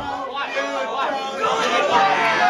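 Several voices talking and calling out over each other in a large room, with the guitar stopped.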